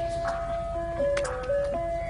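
Ice cream truck chime playing its simple jingle, one held note after another stepping up and down in pitch, over a low rumble.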